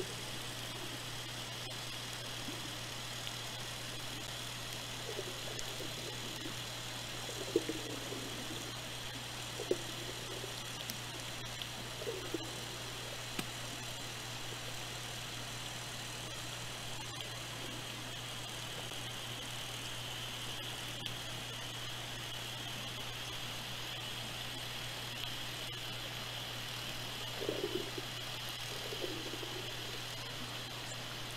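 Underwater hydrophone sound: a steady low hum and hiss, with faint short pitched sweeping calls of northern resident killer whales of the A30 matriline several times, clustered in the first half and again near the end.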